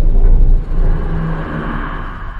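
Deep rumble of a cargo plane's engines with rushing air, loudest in the first half second, the rushing growing toward the end.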